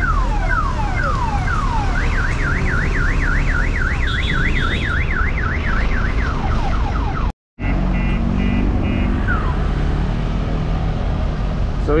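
A car alarm sounding as the parked car is hitched to a tow truck's wheel lifter. It cycles through repeated falling whoops, then a fast up-and-down warble, then short beeps, over the steady low hum of the idling tow truck. The sound drops out completely for a moment a little past halfway.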